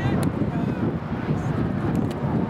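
Wind rumbling on the microphone, with a brief distant shout at the start and two sharp clicks, one just after the start and one near the end.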